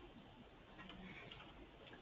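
Near silence: faint room tone with a few very faint ticks about a second in.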